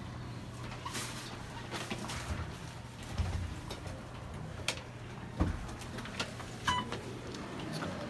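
Inside a modernized Otis traction elevator car: a steady low hum with a series of clicks and low thumps. A brief electronic tone sounds near the end, as the doors slide open.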